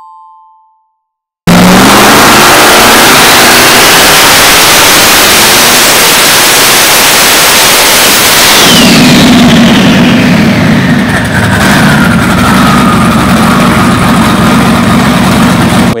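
Twin-turbocharged 427 cubic-inch V8 running at full throttle on a chassis dyno through open race pipes, cutting in suddenly and very loud. About seven seconds later the throttle comes off: the engine settles to a lower steady note while a whine falls in pitch over several seconds as things spin down.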